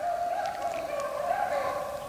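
Pack of beagles baying on a rabbit chase, their overlapping voices running together into one continuous, wavering cry.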